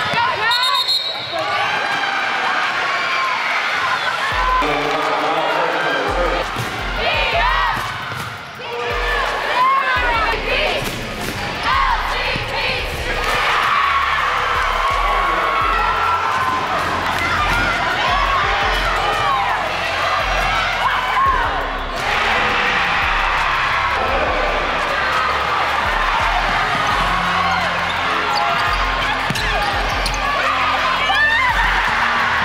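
Live sound of a basketball game in a gym: a ball dribbled on a hardwood court, shoes squeaking, and voices shouting from the court and stands.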